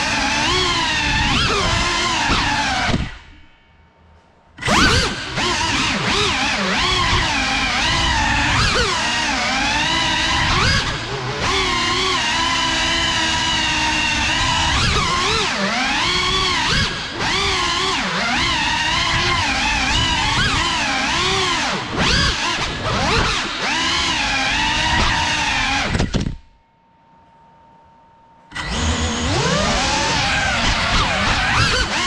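GEPRC Cinelog 35 cinewhoop's motors on a 6S battery whining, the pitch rising and falling constantly with the throttle as it flies fast. The motor sound drops away twice, for a second or two, a few seconds in and again near the end.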